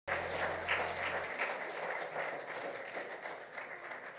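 Congregation applauding, fading away over the few seconds.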